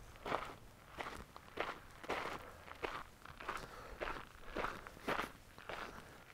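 Footsteps of one person walking at a steady pace on dry, gritty dirt, a little under two steps a second.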